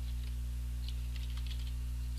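A few faint computer keyboard clicks over a steady low electrical hum.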